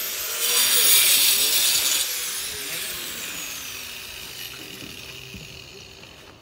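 Angle grinder cutting a brick cladding slip: a loud burst of cutting for about a second and a half, then the disc winds down with a falling whine that fades away.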